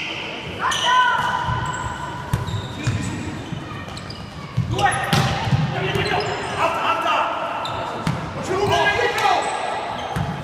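A volleyball being struck again and again during a serve and rally, a series of sharp hits in a large echoing sports hall, mixed with players' shouted calls.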